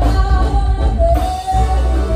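Live band music with a male lead singer holding long, wavering sung notes into a microphone over drums and a strong bass line.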